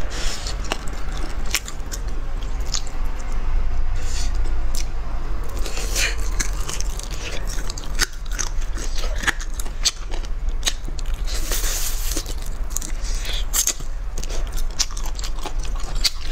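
Close-miked biting and chewing of spicy braised chicken feet, with many sharp wet clicks and crunches as skin and cartilage are gnawed. A steady low hum runs underneath.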